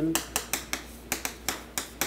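Chalk tapping against a chalkboard while an equation is written: a quick, uneven series of sharp taps, about five a second.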